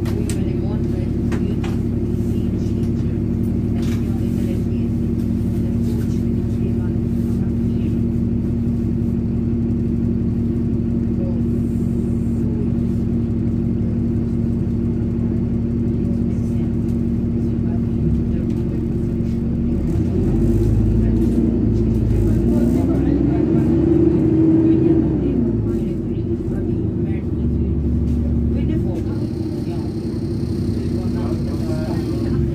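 Alexander Dennis Enviro 400 double-decker bus on a Dennis Trident chassis, heard from inside on the lower deck: the diesel engine and driveline drone steadily. About two-thirds of the way through the note grows louder and rises in pitch, then falls back as the bus accelerates.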